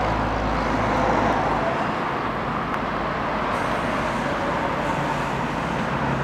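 Steady outdoor traffic noise with a low hum beneath it. The low rumble is stronger in the first second or so.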